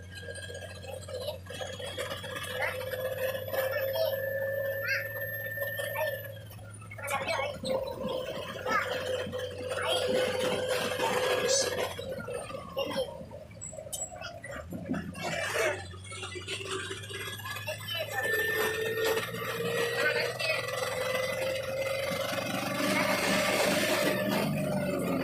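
Bus engine and drivetrain heard from inside the moving bus: a low hum under a steady whine that holds for several seconds and later climbs slowly as the bus gathers speed, with scattered knocks and rattles.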